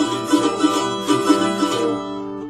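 Mandolin strumming an E minor chord in steady strokes, about three a second.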